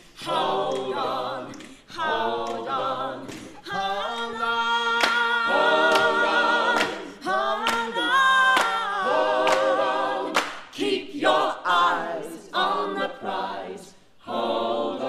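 An ensemble of voices singing unaccompanied in harmony, in phrases broken by short breaths, with a long held chord near the middle.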